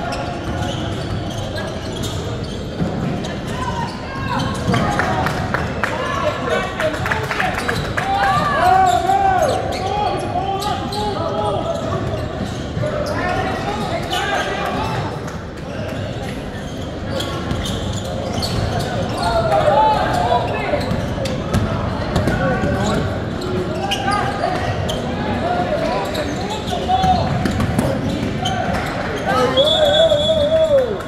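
A basketball being dribbled on the gym floor during live play, bouncing repeatedly, mixed with players' and spectators' shouts in a large indoor gym.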